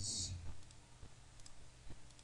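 A few faint computer mouse clicks, one about half a second in and another near the end, over a low steady background hum.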